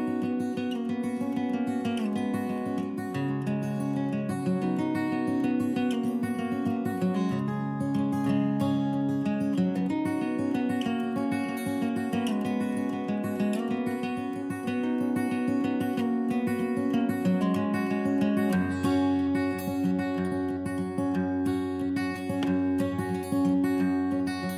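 Background music of a strummed acoustic guitar playing chords at a steady pace, with a deeper bass note joining about three-quarters of the way through.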